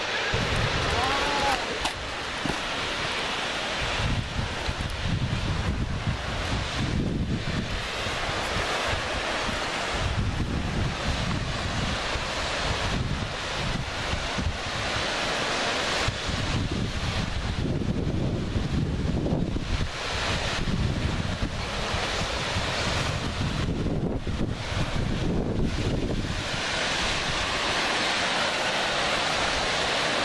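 Steady rushing of a waterfall, with uneven low gusts of wind noise on the microphone coming and going over it.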